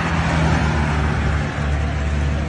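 Road traffic: a motor vehicle running close by, a steady low engine hum over road noise, as in a roadside phone recording.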